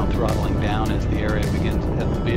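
Background music over the steady low rumble of a Space Shuttle's engines during ascent, with voices mixed in.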